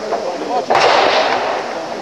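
A single rifle shot about three-quarters of a second in, sharp and loud, followed by a short reverberating tail.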